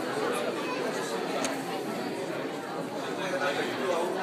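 Many people talking at once in a large room, an indistinct hubbub of chatter; a single sharp click about a second and a half in.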